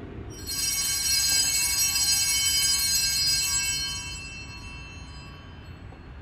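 A bell struck once, ringing with many bright high overtones and fading away over about five seconds.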